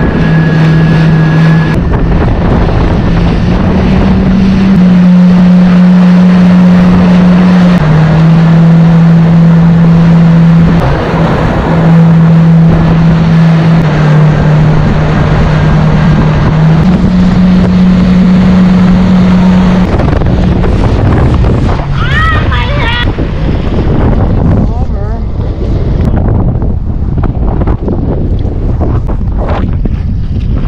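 Yamaha jet ski engine running at speed under a loud rush of wind and water, its note stepping up and down a few times with the throttle. About two-thirds of the way through the engine note drops away, leaving water and wind noise.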